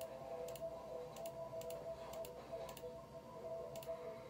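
About ten light, irregular clicks, typical of fingertip taps on a phone screen while a song is being started, over faint steady music tones playing quietly in the background.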